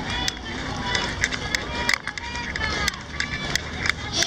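Running footsteps on an asphalt road, a steady patter of footfalls about three a second from runners in a race pack, with voices nearby.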